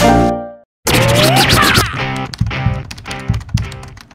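Short closing music jingle. A held chord cuts off about half a second in, then after a brief gap a beat-driven tune starts with a rising sweep and fades out by the end.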